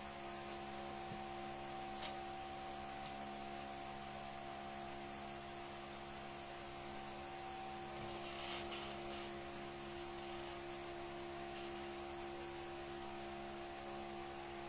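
Steady electrical hum with faint hiss: the room tone of a quiet room, with a soft click about two seconds in.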